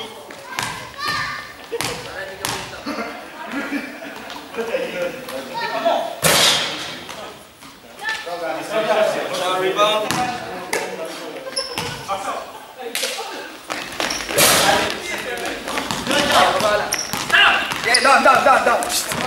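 A basketball bouncing on a sports-hall floor in repeated thuds, with players' voices and shouts in the large hall.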